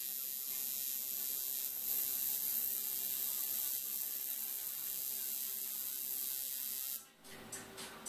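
TIG welding arc on a cast valve cover, a steady high-pitched hiss that cuts off suddenly about seven seconds in as the arc is broken.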